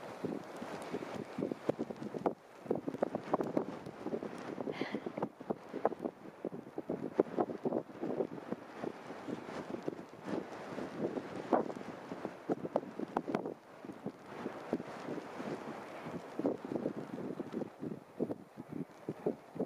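Strong gusty wind buffeting the camera microphone, a rough rumble broken by constant irregular crackles that swell and ease with the gusts.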